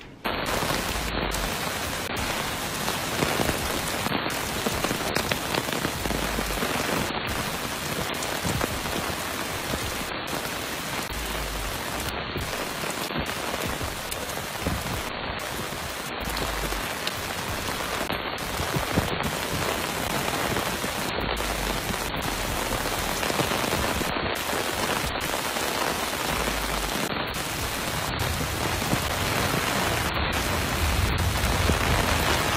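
Heavy rain pouring onto a flooded street with floodwater running across it, a steady hiss.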